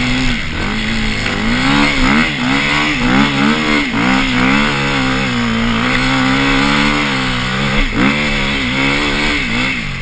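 Off-road motorcycle engine under way, revving up and down repeatedly with the throttle, holding a steadier note for a few seconds in the middle before dipping and picking up again about eight seconds in.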